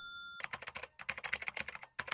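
Computer keyboard typing sound effect: a rapid, uneven run of key clicks starting about half a second in. Before that, the tail of a ringing chime cuts off.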